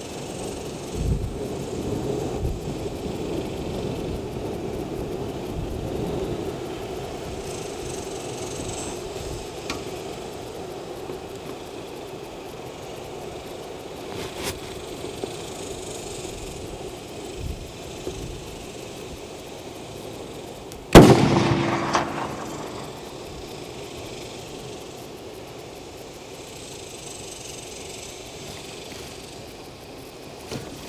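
A single shot from a Howa 1500 6.5 Creedmoor precision rifle, about two-thirds of the way in and by far the loudest sound, its echo trailing off over a second or so.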